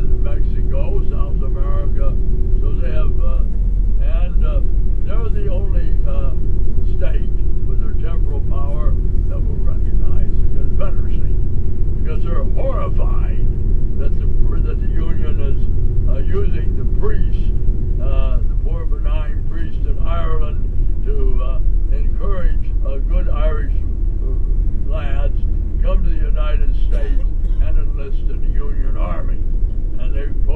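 Indistinct talking over the steady low rumble of a moving vehicle, heard from inside it, as on a tour bus.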